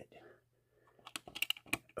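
A quick run of about eight light, sharp clicks and taps in the second half, as of hard plastic handled: fingers or the phone knocking against an acrylic display case.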